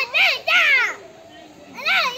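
A child's high-pitched voice: a few short rising-and-falling calls through the first second, then again near the end.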